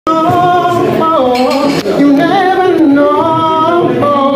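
A man singing unaccompanied, in long held notes that slide from pitch to pitch.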